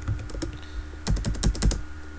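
Computer keyboard being typed on: a few scattered keystrokes, then a quick run of about half a dozen keystrokes in the second half.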